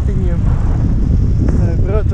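Steady low rumble of wind over the microphone of an action camera riding along on a bicycle, with brief indistinct talk over it.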